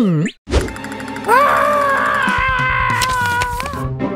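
Cartoon sound effects: a quick falling glide, then a short thud about half a second in, followed by a long held, wavering tone over music.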